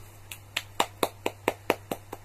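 One person clapping their hands in praise, a steady run of light claps at about four a second.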